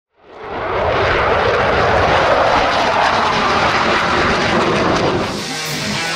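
A steady aircraft engine roar fades in over the first second and holds. It eases off near the end as music comes in.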